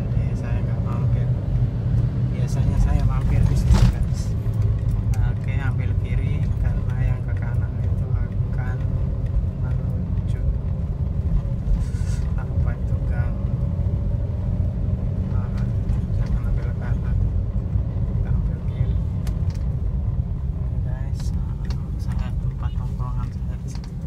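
Steady low rumble of a car's engine and tyres heard from inside the cabin while driving along a street, with a single sharp knock about four seconds in.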